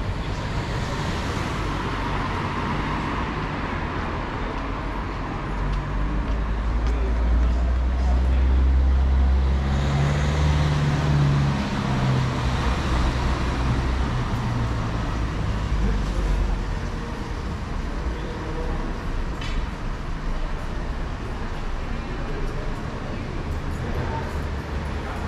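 Road traffic passing on a city street beside the sidewalk. A vehicle's low engine rumble builds, is loudest about 8 seconds in, and fades away after about 12 seconds.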